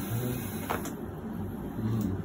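Chiropractic neck manipulation: the joints of the cervical spine give one short crack about two-thirds of a second in, over low room noise.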